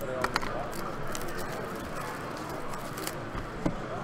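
Crinkling and crackling of plastic shrink-wrap being torn off a sealed trading-card box, in irregular sharp snaps over a background of crowd chatter.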